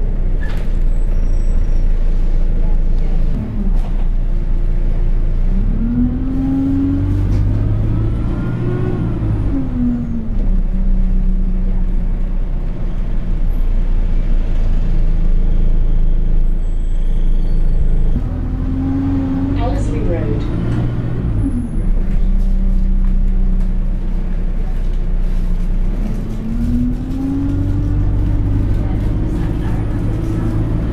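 Alexander Dennis Enviro200 single-deck bus heard from inside the saloon, its diesel engine running under way. Three times the engine note rises and then drops back at a gear change as the bus picks up speed.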